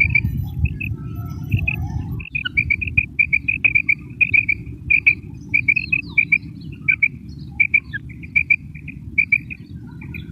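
Female quail (batair) calling: short, high, clipped notes, often in pairs, repeated two or three times a second, played as a lure call for quail hunting. A steady low rumble runs underneath, heavier in the first couple of seconds.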